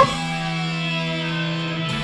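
Rock song's closing electric guitar chord, held and ringing out steadily as the track ends.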